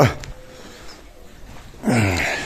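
A lull between a man's remarks: low background with a faint click just after the start, and his voice coming in again near the end.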